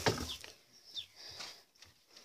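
A short rustle at the start, then a few brief, high, falling chirps of a small bird, about one a second.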